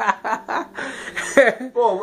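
A man chuckling and laughing in short bursts, mixed with snatches of speech.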